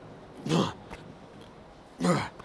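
A man's short, falling grunt of effort on a heavy T-bar row rep, about half a second in, with the next rep's grunt starting right at the end.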